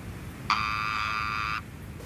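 An electric door buzzer sounding once: a steady, even buzz of about a second that starts and stops abruptly.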